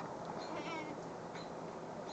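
Young goat kid giving one short, thin, high bleat about half a second in.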